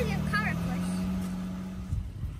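Honda Pilot SUV's V6 engine running under load as it tows a shrub's root ball out of the ground by a chain from its hitch. The engine note holds steady, drops slightly about half a second in, and fades out near the end.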